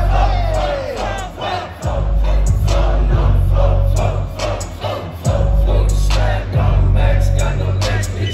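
Hip-hop beat playing loud through a concert sound system, with long deep bass notes that drop out and come back several times and sharp drum hits throughout. A crowd shouts along, loudest near the start.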